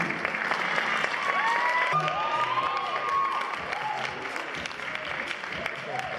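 An audience applauding in a hall as performers take a bow, with high whooping cheers rising and falling over the clapping from about one to five seconds in.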